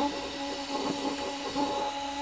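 Racerstar 3650 four-pole 3100 kV brushless RC motor spinning freely on its ESC, a steady whine with several held tones over a soft hum. It is running smoothly.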